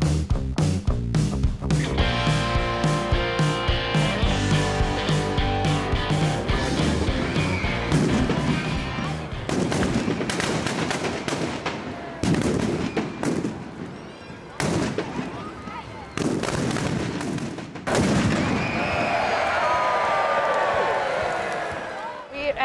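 Firecrackers bursting inside the burning Böögg effigy: rapid, irregular bangs in dense volleys with short lulls, mixed with background music with a steady beat.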